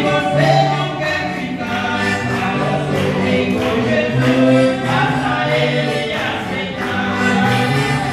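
A duo, a woman and a man, singing a gospel hymn to piano accordion accompaniment, with the accordion's low bass notes changing about once a second under the voices.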